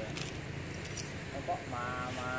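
Light metallic jingling and clinking during the first second, over a low steady rumble.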